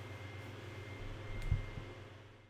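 Room tone from the narration microphone: a steady low hum with a faint thin high tone, and a soft low thump with a faint click about a second and a half in.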